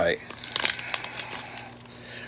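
Plastic wrapper of a 2021 Upper Deck hockey card pack crinkling in a run of small crackles as fingers pinch and pull at it, thinning out near the end. The tough wrapper is not tearing open.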